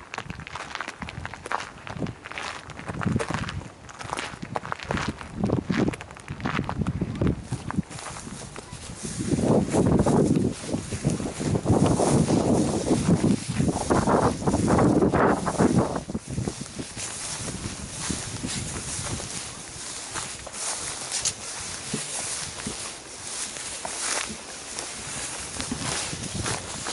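Footsteps through grass and gravel as someone walks around a parked pickup whose engine is off, with louder rustling and rumbling, likely wind on the microphone, from about nine to sixteen seconds in.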